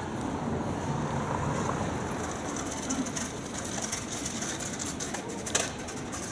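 Steady rumble of city street noise and traffic, with a sharp click about five and a half seconds in.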